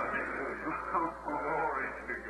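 A faint, muffled man's voice from an old, thin-sounding recording, with the high frequencies cut off: the original English sermon audio heard beneath the Spanish interpretation.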